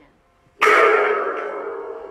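A single loud crash about half a second in, which rings on with a steady tone and slowly fades.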